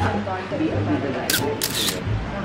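Camera shutter going off twice in quick succession about a second and a half in, as a photo is taken.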